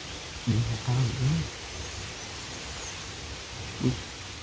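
A man's voice saying a short phrase about half a second in and a brief word near the end, over steady outdoor background noise.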